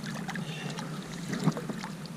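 Shallow lake water splashing and sloshing as hands and a round mesh keepnet move through it, in irregular splashes with a louder one about one and a half seconds in.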